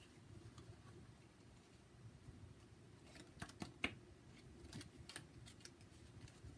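Faint clicks and snaps of a deck of card-stock oracle cards being handled, a run of sharp ticks in the second half, over quiet room tone.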